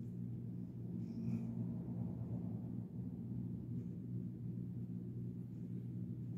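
A steady low hum made of several even tones, with a faint soft sound about a second in.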